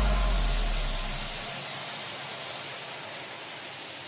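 A break in electronic background music: a low bass note fades out over the first second and a half, leaving an even hiss of noise.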